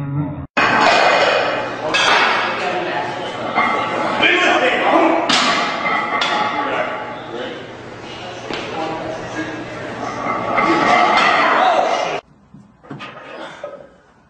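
Loud voices mixed with several sudden crashes and clanks, about two, five and six seconds in, like weights being dropped. Quieter after about twelve seconds.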